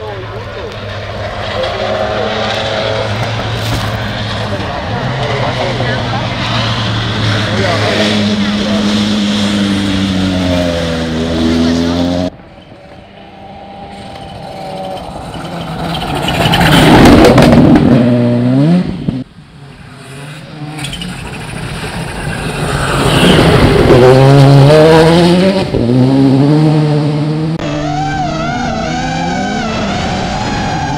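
Rally car engines at full throttle on a dirt stage, the note climbing and dropping back in steps with each gear change. Twice in the second half a car comes close by, its engine swelling loud and then falling away.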